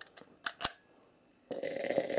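Black & Decker Stowaway SW101 travel steam iron: two sharp clicks, then steam starts hissing steadily about a second and a half in.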